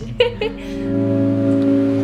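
A band's held opening chord on guitar and bass guitar swells in and rings steadily, after a brief voice sound at the very start.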